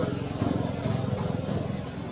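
A motor vehicle engine running steadily in the background, a low pulsing drone.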